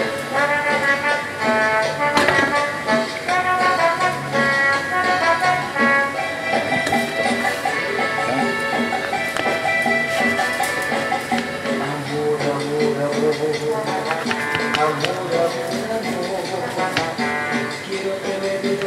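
Music from a radio, with a voice heard over it, playing steadily.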